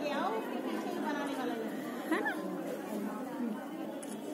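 Indistinct chatter of a group of girls talking at once, no single voice standing out, at a steady moderate level.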